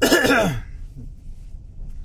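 A man clears his throat once, loudly and briefly, right at the start, over the steady low rumble of a car driving, heard from inside the cabin.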